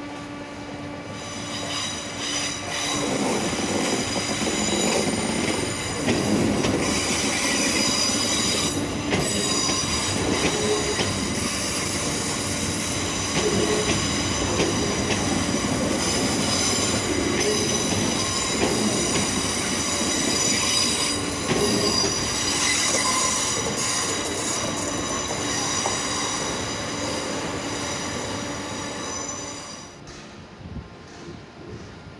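London Northwestern Railway Class 350 Desiro electric multiple unit running into the platform and slowing, with a steady rumble and several high-pitched squeals as it brakes. The sound grows louder about three seconds in, as the train draws alongside, and drops away near the end.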